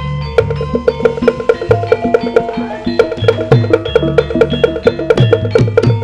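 Javanese gamelan ensemble playing an instrumental piece: a fast, even run of metallophone notes over groups of low drum strokes, with sharp wooden knocks throughout.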